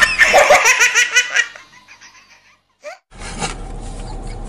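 A baby laughing hysterically in rapid, loud belly laughs that fade out about a second and a half in. A low steady hum follows from about three seconds in.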